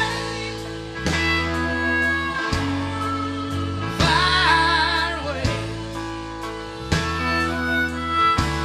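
Country song playing: guitar over a steady bass line, with chords changing about every second and a half and a sung phrase about halfway through.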